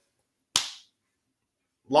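A single sharp smack about half a second in, dying away quickly.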